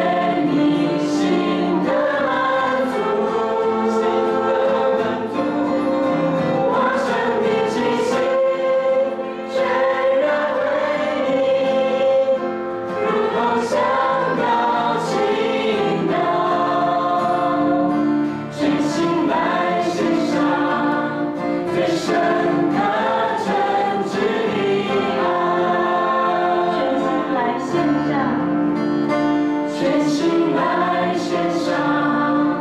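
A mixed group of male and female singers on microphones sings a Mandarin worship song together, accompanied by acoustic guitar, in long held notes.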